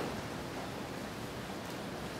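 Steady, even background hiss of room noise, with no distinct knock or creak.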